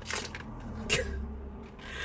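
A few short clicks and rustles of hands working at tight plastic retail packaging that will not open without scissors.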